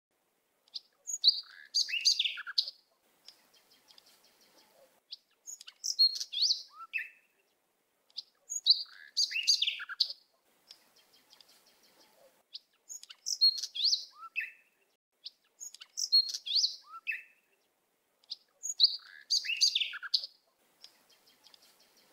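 A songbird singing the same short phrase of quick rising and falling chirps over and over, about every three to four seconds, with near silence between the phrases.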